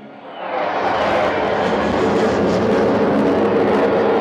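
Jet aircraft passing overhead in a ride film's soundtrack: a loud rushing noise that builds over the first second, then holds steady.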